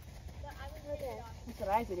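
Horse walking on sandy arena footing, its hoofbeats heard under a person's voice speaking twice, louder near the end.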